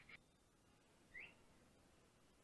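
Near silence, broken by two faint, brief high chirps: one at the very start and a second, rising in pitch, about a second in.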